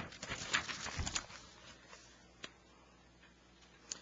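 A few faint clicks and rustles in the first second or so, then near silence broken by two single soft ticks.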